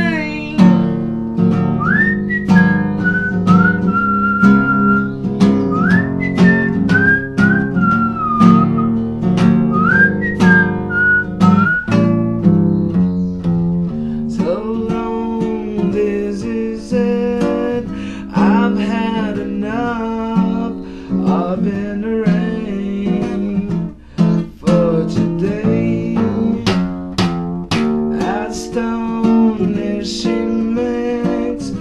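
Acoustic guitar strummed and picked, with a whistled melody sliding between notes over it for roughly the first twelve seconds; after that the guitar carries on without the whistling.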